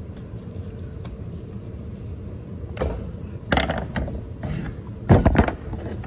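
Clicks and knocks of plastic chainsaw parts as the rear handle housing of a Stihl 038 AV chainsaw is fitted back on and worked with a screwdriver. Faint ticks at first, then a run of sharp knocks from about three seconds in, loudest about five seconds in, over a steady low hum.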